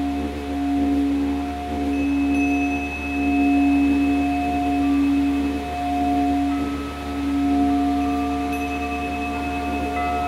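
Crystal singing bowl played by circling a mallet around its rim: one sustained low hum with fainter overtones above it, swelling and fading every second or so. Further higher ringing tones join in over the last few seconds.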